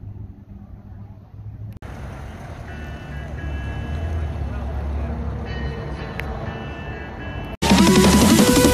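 Low, steady rumble of a car engine running, quiet at first and louder after a cut about two seconds in. Loud electronic dance music cuts in abruptly just before the end.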